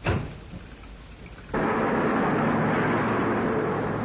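A sudden thump, then from about one and a half seconds in a 1930s car's engine running with a loud, steady rushing noise that eases off near the end.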